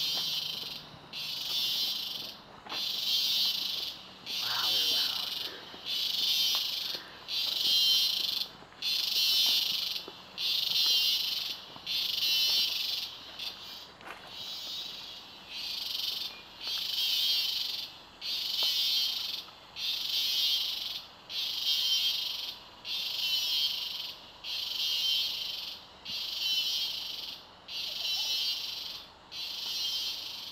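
Rainforest insects calling in even, high-pitched buzzing pulses, each about a second long and repeating roughly every one and a half seconds.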